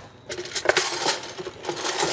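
Metal cutlery clinking and clattering as handfuls of it are handled at the kitchen counter. There is a brief lull at the start, then many quick clinks follow one another.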